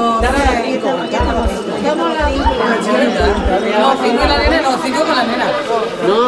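Several people talking over one another, with a low thump repeating about once a second under the voices that stops about four and a half seconds in.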